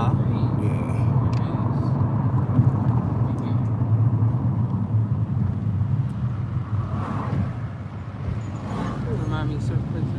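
Car cabin noise while driving: a steady low drone of engine and tyres on the road, heard from inside the moving car.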